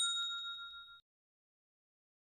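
Notification-bell sound effect: a single bright ding with two clear ringing tones that dies away over about a second and cuts off abruptly.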